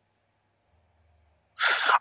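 Near silence, then about one and a half seconds in a short, sharp intake of breath by a man just before he starts to speak.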